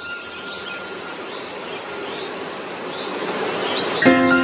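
Night-time outdoor ambience of insects chirping over a steady hiss, gradually getting louder, from a film soundtrack played through a hall's speakers. A thin steady tone fades out about a second in.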